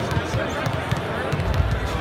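Basketballs bouncing on a hardwood arena court amid a babble of voices, with short sharp knocks scattered throughout. A low rumble comes in near the end.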